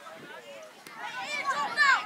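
Several people's voices calling out, unclear and overlapping, with one loud, high call near the end.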